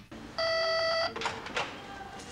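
Electric doorbell buzzing once for just over half a second when its button is pressed.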